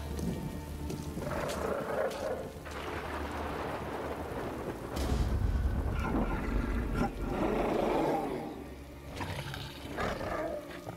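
Steady rain falling, with a deep rumble of thunder rolling in about halfway through, under a tense film score. Two louder rushing swells rise and fade, one around two seconds in and one near the eight-second mark.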